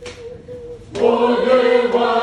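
A church choir singing together, coming in loudly about a second in after a faint held note.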